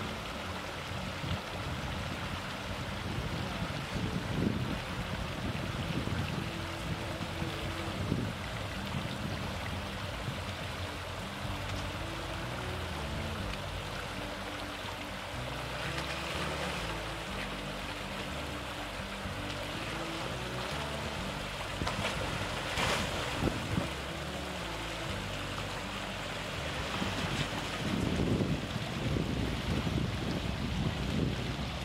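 A shallow rocky creek rushing steadily while a Toyota Tacoma pickup drives through it at low speed, its engine running under the water noise. The tyres splash through the water around the middle, and louder near the end as the truck comes close.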